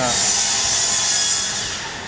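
A loud, high-pitched hiss that starts suddenly and fades away over about two seconds.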